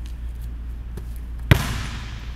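A basketball bounced once on a hardwood gym floor about one and a half seconds in, a sharp bang that rings on in the gym's echo; before it only a steady low hum.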